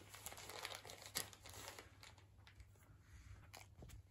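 Faint, irregular crinkling and tearing of wrapping paper as a Bedlington terrier noses and pulls at a wrapped present, with a sharper crackle about a second in.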